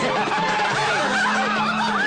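A man laughing over background film music.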